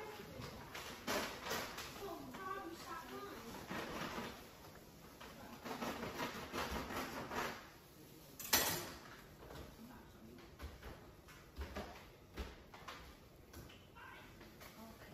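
Faint voices in the background with scattered knocks and clatters, as of household activity in a kitchen; one sharp knock about eight and a half seconds in is the loudest sound.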